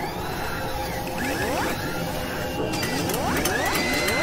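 Sound effects for an animated channel logo: mechanical clicks and clatter with several rising whooshes, and a held tone coming in near the end.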